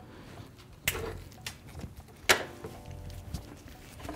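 A few light knocks and clicks as a wrapped steel exhaust header is handled and turned over, the two sharpest about one second and two seconds in.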